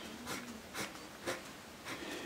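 Pencil scratching on paper in short hatching strokes, about every half second, as a face of a drawn cube is shaded in.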